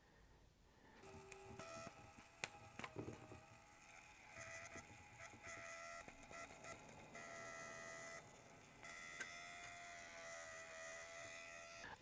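Faint, steady electric whine of the Thermaltake Tide Water's small water pump running, cutting out briefly twice, with a few light handling clicks before it starts.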